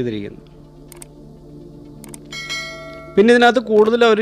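A bright electronic bell chime sound effect rings about two seconds in, lasting about a second, over a quiet background music bed. A man's voice is heard at the very start and again near the end.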